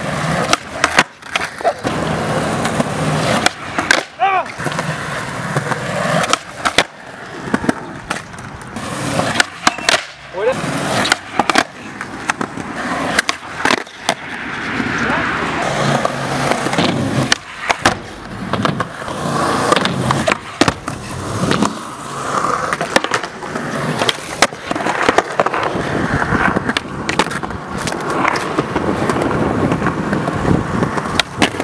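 Skateboard wheels rolling on skatepark concrete, broken again and again by the sharp clacks of the board being popped and landing.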